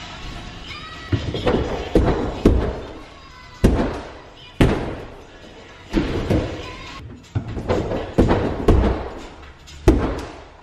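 Repeated heavy thuds of a body landing on an inflatable airtrack, about ten at uneven intervals of half a second to a second and a half, each fading out quickly.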